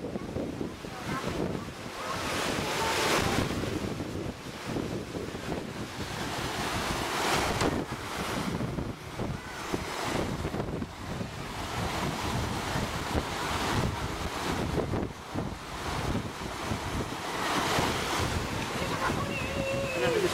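Wind gusting across the camcorder's microphone, a rushing noise that swells and fades every few seconds.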